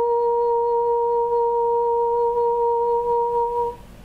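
A woman's voice humming one long, steady high note that stops shortly before the end; a short pause follows.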